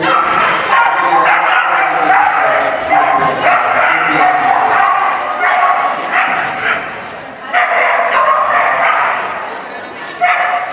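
A dog barking rapidly and almost without a break during an agility run, with a short pause about seven seconds in, and a voice calling alongside.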